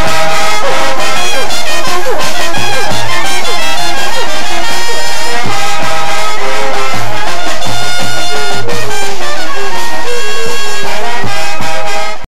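A Colombian porro played by a banda pelayera, a wind band of trumpets, trombones and clarinets with bass drum. It plays at full volume, with sliding low-brass notes early on over a steady low bass beat.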